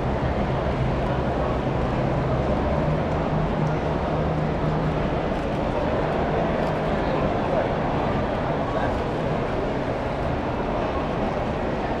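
Steady crowd hubbub: many indistinct voices over a low, steady hum.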